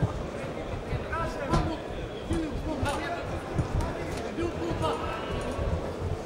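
Arena sound of a live boxing bout: voices calling out over a steady crowd hubbub, with a few dull thuds from the fighters in the ring.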